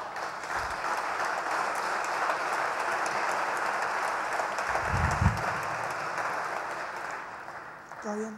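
Audience applauding, the clapping fading out near the end, with a dull low thump about five seconds in.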